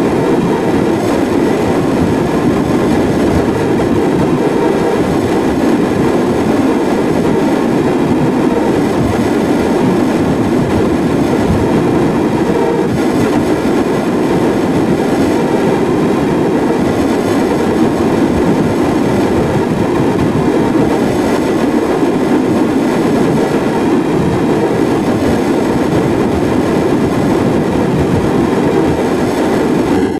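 Loud, continuous, dense distorted noise that runs steadily without a beat or words, heaviest low in pitch, from a heavily effect-processed audio track.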